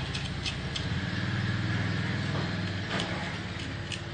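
A motor engine running with a steady low hum that swells through the middle and eases off near the end, with a few light clicks over it.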